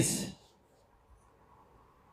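A man's spoken word ends in the first half second, then a pause of near silence with faint room tone and a couple of tiny clicks.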